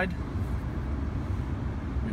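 Steady low rumble of background noise inside a pickup truck's cabin, with no distinct click or knock.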